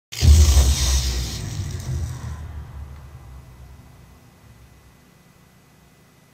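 Thunderclap sound effect: a sudden loud crack with a deep rumble that fades away over about five seconds.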